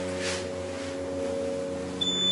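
Elevator car running: a steady hum made of several low held tones.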